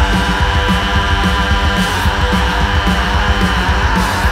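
Loud heavy rock played live: distorted electric guitar through a Blackstar amp over a full drum kit, running steadily with a regular beat.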